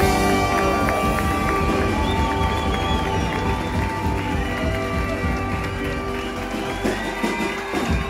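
A live swing band playing loud and steady: upright bass, electric guitar and saxophone, with long held horn notes over a steady beat, heard from within the crowd.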